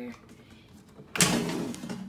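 Power XL Vortex air fryer's basket drawer pulled out of the unit: a sudden loud sliding noise about a second in that fades over the next second.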